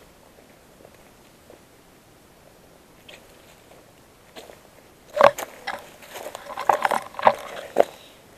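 Footsteps crunching on dry leaves and twigs on a dirt trail: a run of irregular crackling steps begins about five seconds in.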